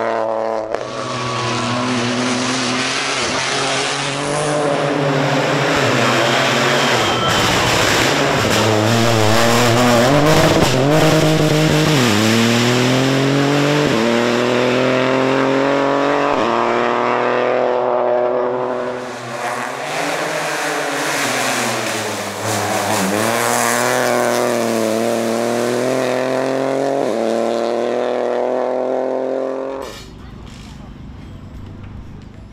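Rally car engine under hard acceleration, its pitch climbing and then dropping back at each upshift, several times over. Partway through there is a rough, crackling stretch before it pulls up through the gears again.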